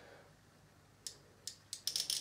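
Front drag of a Jaxon Saltuna 550 spinning reel giving a few sparse clicks, from about a second in, as line is pulled off the spool with the drag backed right off.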